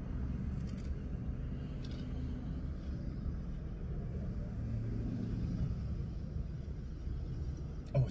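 Steady low rumble inside a car cabin, with a couple of faint clicks about one and two seconds in.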